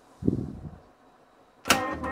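Astra 111s-1 reel-to-reel tape recorder being worked at its controls: a low thud about a quarter second in, then a sharp click near the end as recorded music starts playing loudly from the tape.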